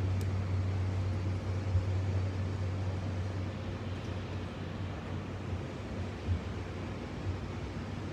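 Steady outdoor city background noise: a constant low rumble with hiss, with no distinct events.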